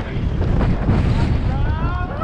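Wind buffeting the microphone of a bicycle-mounted camera, over a steady low rumble from bike tyres rolling on grooved, rough asphalt that shakes the bike.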